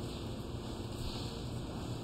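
Quiet room tone: a steady, low background hum and hiss with no speech or music.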